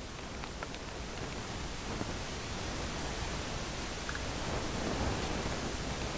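Steady, even hiss of background noise that slowly grows a little louder, with no distinct sound events.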